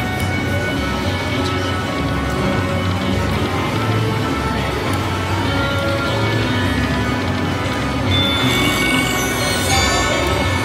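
Buffalo Gold video slot machine playing its free-games bonus music while the reels spin. Near the end, brighter, higher chimes sound as a gold buffalo head lands and is collected.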